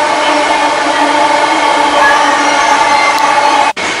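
JFK AirTrain car in motion, heard from inside: steady running noise with a whine of several held tones from its linear-induction drive. The sound drops out for an instant near the end.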